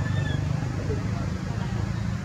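A few short, thin, high calls over a steady low rumble.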